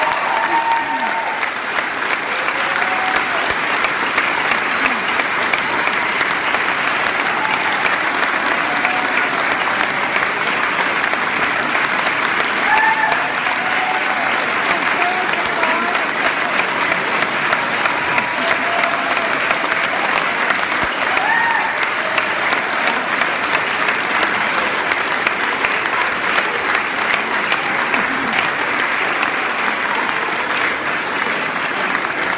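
Audience applauding steadily without a break, with a few voices heard over the clapping.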